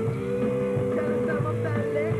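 Live rock band playing, guitar to the fore, with one long held note.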